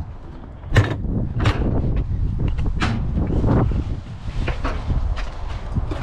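Footsteps on asphalt, roughly one every two-thirds of a second, with wind rumbling on the microphone as the camera is carried along.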